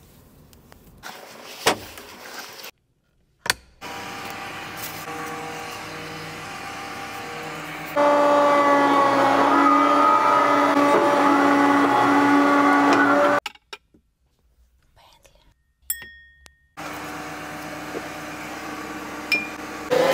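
Excavator engine running with a steady hydraulic whine, heard in a string of short clips split by sudden cuts and brief silences. It is loudest from about eight to thirteen seconds in.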